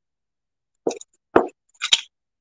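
Three short knocks and clicks about half a second apart from a powder blush compact being handled, the last one the sharpest.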